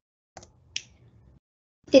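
Two short, sharp clicks less than half a second apart, most likely a computer mouse or key click advancing a presentation slide.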